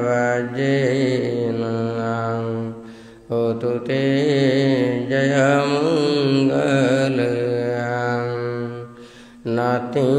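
A Buddhist monk chanting Pali verses solo in a slow, drawn-out melodic recitation, holding long notes. There are short breath pauses about three seconds in and again near the end, before the next phrase starts.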